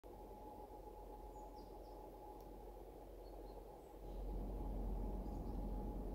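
Faint outdoor ambience: a low rumble that grows louder about four seconds in, under a steady faint high hum, with a few faint bird chirps.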